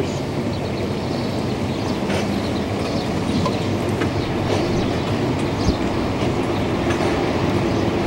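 Steady, unbroken rumble of city street and construction-site noise, with a faint low hum and a few faint ticks.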